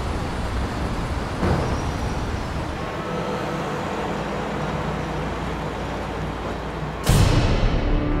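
Steady low rumble and hiss of city traffic noise. About seven seconds in comes a sudden loud hit with a whoosh that falls in pitch.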